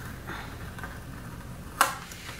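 Quiet handling of sticker paper as a sticker is peeled from its backing sheet, with one short, crisp crackle near the end.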